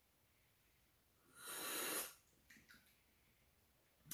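A person's single audible breath, a short airy rush of air lasting under a second about a second and a half in, followed by two faint small mouth sounds.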